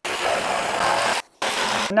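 Cordless jigsaw cutting a notch out of a hardwood floorboard: an even, buzzing saw noise. It cuts out for a moment just past a second in, then resumes.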